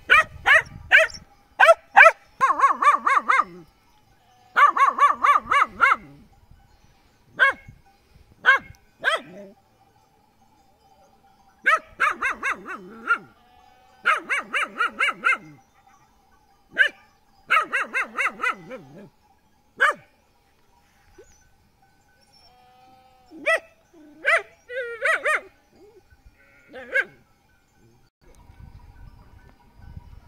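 A flock of sheep and goats bleating: many quavering calls, singly and in runs, with short pauses between clusters. The calls die away a few seconds before the end.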